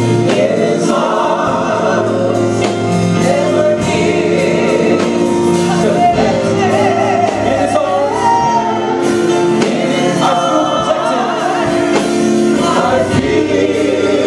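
Gospel praise team of several women and a man singing into microphones over sustained keyboard chords, with vibrato on the held notes.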